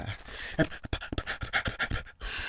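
A man panting rapidly in quick, short breathy puffs, about eight a second.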